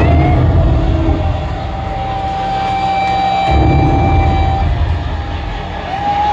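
Live death metal band through a loud club PA: a heavy distorted low rumble from bass and guitars, with a long held high guitar note ringing over it for several seconds, and a note sliding up at the start and again at the end.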